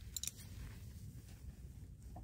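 Quiet low hum with a few faint clicks just after the start.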